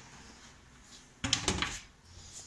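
A short clatter of several quick knocks about a second and a quarter in, like a hard plastic or sheet-metal panel being handled, after a faint stretch.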